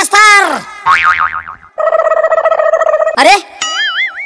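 Cartoon-style comedy sound effects: a springy boing with a wobbling pitch, then a held buzzing horn-like tone, then another wobbling boing near the end. A brief shout of "arre" comes just before the last wobble.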